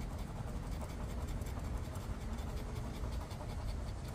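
A metal coin scratching the coating off a scratch-off lottery ticket, a steady scratching.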